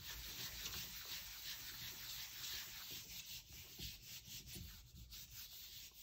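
Palms rubbing over the back of a sheet of Bristol paper pressed onto a gel plate, burnishing it to pull a ghost print: a faint, steady dry rustle that grows a little fainter in the second half.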